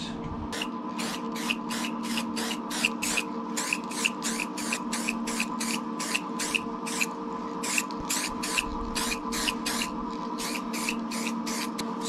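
Aerosol spray-paint can hissing in short, quick bursts, about two to three a second, as paint is dabbed onto a steel panel, with a brief pause a little past the middle. A faint steady hum runs underneath.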